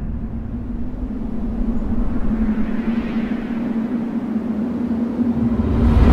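Cinematic logo-intro sound effect: a deep rumbling drone under a steady low hum, with a hiss that swells and fades around the middle, ending in a sharp hit right at the end.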